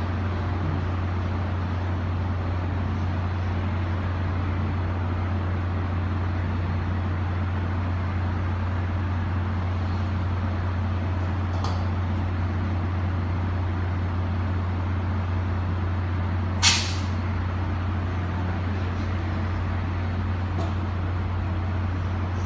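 Tri-Rail commuter train standing at the platform with its diesel locomotive running: a steady low hum throughout. A short, sharp air hiss from the brake system about three-quarters of the way through, with fainter brief hisses around the middle and near the end.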